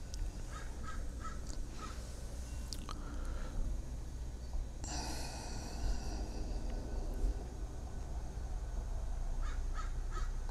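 A bird calling: a few short notes near the start, one longer harsh call about five seconds in, and a few more short notes near the end, over a steady low hum.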